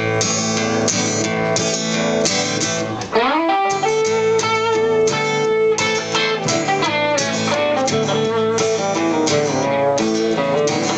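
Acoustic guitar and electric guitar playing an instrumental song intro together, strummed chords under single lead notes. About three seconds in, the notes slide quickly upward in pitch, then settle into held lead notes.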